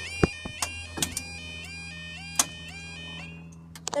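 Level crossing warning alarm sounding while the barrier lowers: a repeating rising electronic warble about twice a second over a steady low hum, with a few sharp clicks. The alarm fades out near the end as the barrier comes down.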